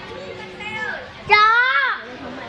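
A young child's high-pitched voice: a short softer call, then a louder drawn-out cry a little past the middle that rises and then falls away, lasting about half a second.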